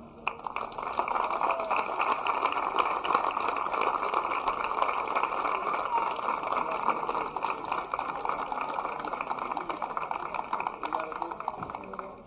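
Audience applauding, many hands clapping together at once; the clapping thins out and fades near the end.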